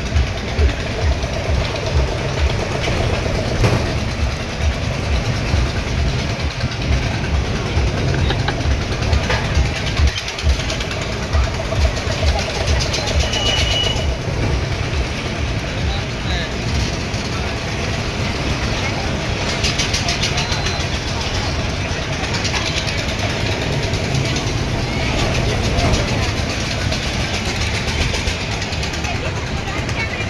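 Wind buffeting a phone's microphone on a fast-spinning fairground ride, as irregular low rumbling gusts throughout, over a steady din of fairground noise and voices.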